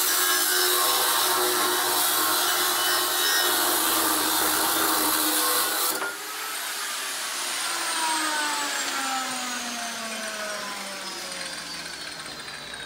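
A 9-inch angle grinder with a metal cutting disc cuts through a steel RSJ beam, a loud, harsh grinding. About halfway through, the cutting stops abruptly and the grinder's motor and disc wind down, the whine falling steadily in pitch.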